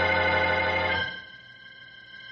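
Organ music bridge: a held chord with a deep bass note that cuts off about a second in, leaving a few faint high tones ringing.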